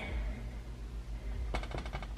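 Quiet kitchen room tone with a low hum, broken about one and a half seconds in by a short quick run of faint light clicks.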